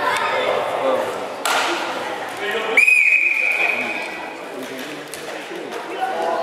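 Referee's whistle: one long, steady, high blast of about a second and a half, near the middle, signalling the wrestlers to resume. A single sharp knock comes a little earlier.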